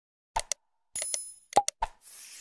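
Subscribe-button animation sound effects: a pair of quick mouse clicks, then a bright bell ding with clicks over it about a second in, then more clicks and a short pop near the end.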